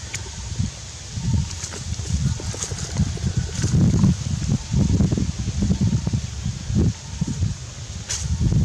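Wind buffeting the microphone in uneven low gusts, loudest around the middle, with dry leaves rustling and crackling underneath.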